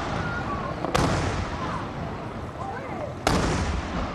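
Firework cylinder shells bursting high overhead: two loud bangs, about a second in and a little after three seconds, each trailing off in a long echoing rumble.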